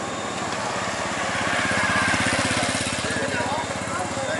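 A small motorbike engine passing along the street, its rapid firing pulses growing louder to a peak about two seconds in, then fading.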